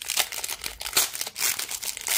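Foil wrapper of an Upper Deck MVP hockey card pack being torn open and crinkled by hand, a quick, unbroken run of sharp crackles as the wrapper is peeled back from the cards.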